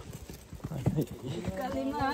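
Footsteps of hikers on a rocky, leaf-strewn dirt trail: a few separate knocks of shoes on stone. A voice starts up near the end.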